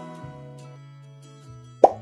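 Quiz-game sound effects over background music: the ring of an answer-reveal chime dies away, then a short, loud pop-like transition sound comes near the end.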